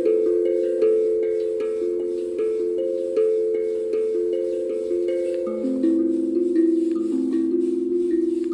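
Hapi steel tongue drum tuned to the A Akebono scale, played with mallets: a flowing run of struck notes, several a second, each one ringing on beneath the next.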